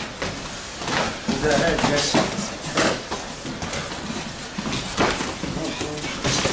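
Gloved punches, kicks and knees landing during Muay Thai sparring: a handful of sharp smacks a second or more apart, with voices in the gym around them.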